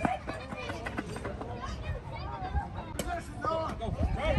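Background chatter of several people's voices, none of it clear words, with a single sharp click about three seconds in.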